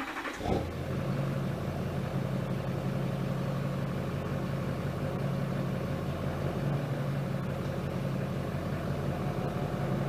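LBZ Duramax 6.6 L V8 turbodiesel pickup engine starting up, catching about half a second in, then running steadily at idle.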